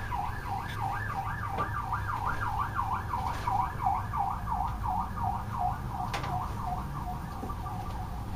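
An emergency-vehicle siren in a fast yelp, its pitch sweeping smoothly up and down about two to three times a second, fading near the end.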